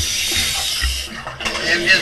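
Water sloshing and splashing around a camera held at the waterline, a steady hiss with a low thump just under a second in. A man's voice comes in near the end.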